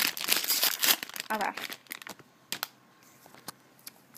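Foil blind-bag packet crinkling and tearing as it is opened for about the first two seconds, then a few small clicks with the rest quiet.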